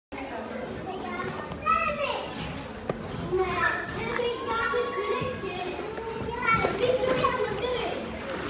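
Young children's voices at play: babble, calls and squeals, with a toddler vocalising close by.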